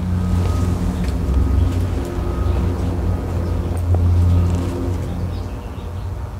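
A low engine drone with a steady pitch, swelling and then fading away near the end, as of a motor passing by.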